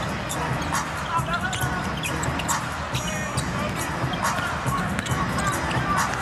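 A basketball being dribbled on an arena's hardwood court, sharp bounces at an uneven pace over a steady crowd din.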